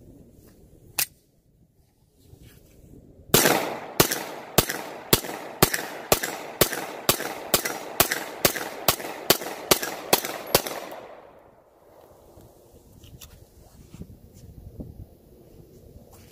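Beretta 92S 9mm semi-automatic pistol firing about fifteen shots in steady succession, roughly two a second, emptying its 15-round magazine. One sharp click comes about a second in, before the shooting starts.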